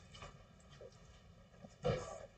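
Quiet room tone with a few faint ticks, then a short breath-like sound near the end.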